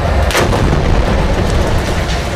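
A large explosion blowing apart a building: one sharp bang about a third of a second in, over a deep, continuous rumble.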